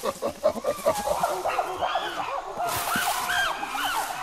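Chimpanzee calling: a quick run of hoots that climbs into higher, arching calls.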